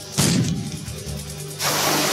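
A cannon shot sound effect: a sudden blast just after the start that fades out over about a second, then a rushing noise about a second and a half in, over background music.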